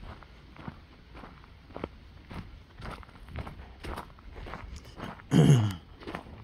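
Footsteps on a dirt-and-gravel driveway, a steady walking pace of about two steps a second. About five and a half seconds in comes one short, loud vocal sound from the walker.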